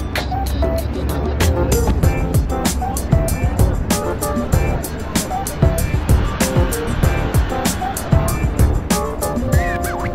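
Background music with a steady beat and a melody of short notes.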